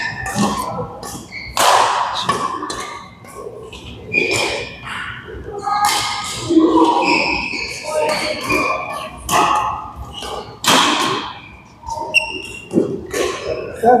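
Badminton rackets striking shuttlecocks: sharp cracks at irregular intervals, echoing in a large hall.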